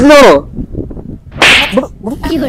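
A short, sharp swish of noise about one and a half seconds in, lasting under half a second.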